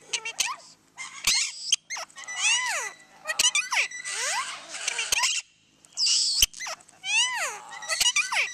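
Parakeets calling: runs of sharp squawks, each sweeping down in pitch, broken by a few sharp clicks and a short pause a little past halfway.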